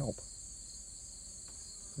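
Steady, high-pitched chorus of insects trilling outdoors.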